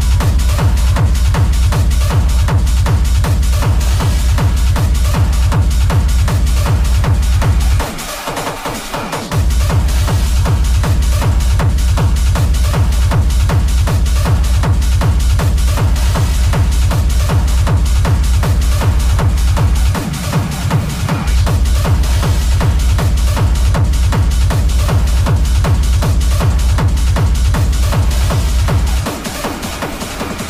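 Hard techno from a DJ set, driven by a steady, heavy kick drum in a fast even beat. The kick drops out for about a second and a half around eight seconds in, dips again briefly near twenty seconds, and stops about a second before the end.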